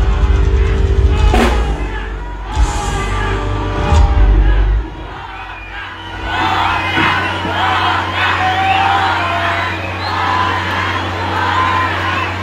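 Live band music with heavy bass played loud through the stage PA, stopping suddenly about five seconds in as the song ends; a large crowd then cheers and shouts, over a steady low hum from the sound system.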